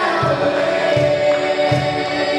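Folk band music: several voices singing together over sustained instruments, with a low drum beat about every three-quarters of a second.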